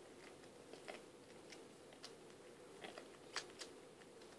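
Siamese kitten mouthing and nuzzling at a schnauzer's neck fur: faint, irregular small clicks and smacks, one or two a second, the loudest a little past three seconds in.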